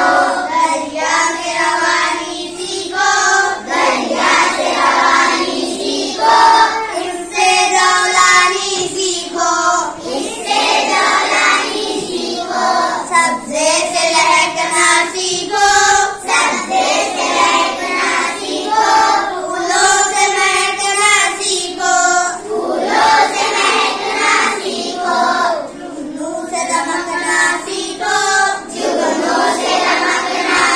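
A child singing an Urdu poem in long, held melodic phrases.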